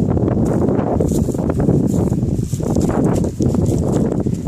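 Wind buffeting the microphone in a steady low rumble, with scattered light knocks.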